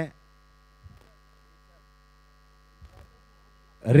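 Faint steady electrical hum in the commentary audio feed, with two brief soft noises about one second and three seconds in.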